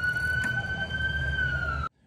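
Police siren wailing, holding a high, nearly steady tone that drifts slightly up and then down, over a low rumble. The sound cuts off suddenly near the end.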